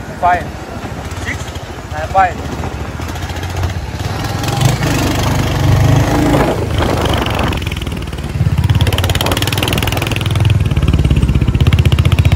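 Motorcycle engine running and being revved in surges, loudest over the last few seconds.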